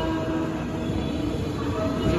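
JR West 201 series electric train running slowly into a station platform, a steady rumble of the train on the rails. Faint steady tones sit over the rumble.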